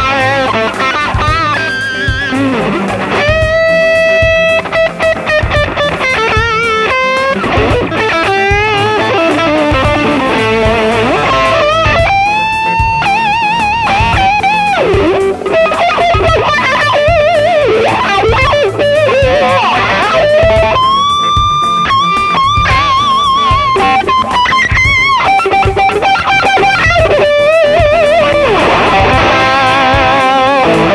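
Spear RT T Telecaster-style electric guitar played through a Marshall amp with a powerful overdriven tone. It plays a lead line of single notes: long sustained notes with wide vibrato, string bends and quicker runs.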